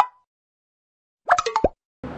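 Edited-in comedy sound effect: one last ticking beep right at the start, then dead silence, then a quick cluster of plop-like pops ending in a short falling tone about a second and a half in.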